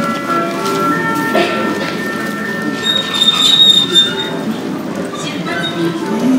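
Terminal PA chime: several ringing tones at different pitches, each held for a second or more and overlapping, over the busy background of an airport terminal. It leads into a boarding announcement.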